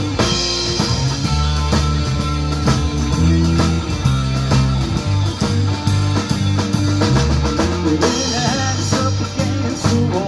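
Live rock band playing an instrumental passage: electric guitar over a steady drum-kit beat and bass guitar.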